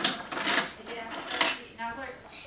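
Three short, sharp clinks or clatters of small hard objects being handled.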